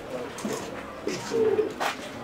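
A bird cooing in low, steady notes, with a few sharp clicks, the loudest near the end.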